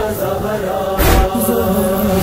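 Noha recitation between lines: voices hold a steady wordless chant, over a slow beat of deep chest-beat (matam) thumps about every 1.2 seconds, one falling about a second in.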